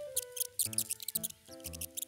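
Two cats licking and chewing a wet paste treat from their dishes: quick, wet, smacking clicks in short runs. Light background music plays underneath.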